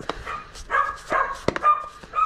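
A plastic lid pressed down onto a square plastic tub, clicking shut twice, with short high-pitched squeaks in between.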